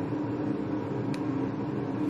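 Steady background hum of a running air fryer, a low even drone with a faint steady tone in it. A single light click about a second in.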